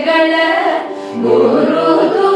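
A group of female and male voices singing a Carnatic kriti in unison in raga Malayamarutham. A held note gives way to a brief drop in loudness about a second in, then the group takes up the next phrase.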